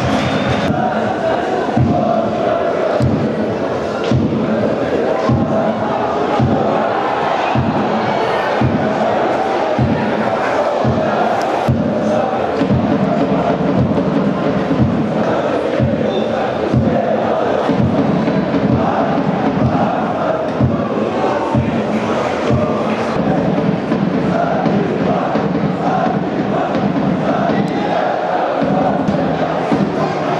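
Football supporters chanting in the stands, backed by a steadily beaten drum that stops about two-thirds of the way through.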